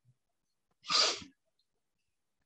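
A single short, sharp breath sound from a man, a hissy burst of about half a second, about a second in; the rest is near silence.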